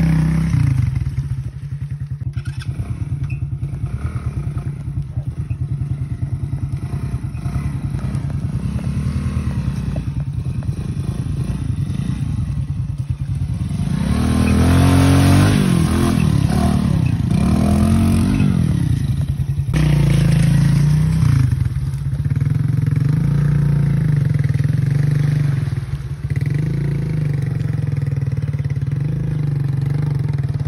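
Small motorcycle engine running close by in thick mud, with a steady pulsing note. About halfway through the engine revs up and down several times as the bike is ridden through the mud with its rear wheel slipping, then it settles back to a steady run.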